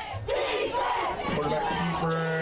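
A man's voice shouting excitedly, drawn out and rising and falling, over a cheering football crowd as a touchdown run goes in.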